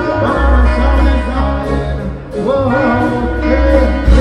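Live reggae band playing: heavy bass guitar, drum kit, electric guitar and keyboard, with a singing voice over the rhythm. The music thins and dips briefly a little after two seconds in.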